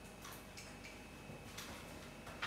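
A few faint, soft crinkles and clicks of a crumpled paper tissue being handled and wiped across a face.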